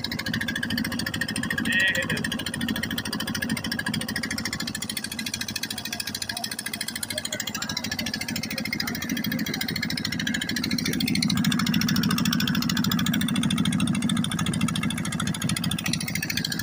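Engine of a river boat running steadily while underway, with a rapid low pulse, growing a little louder for a few seconds past the middle.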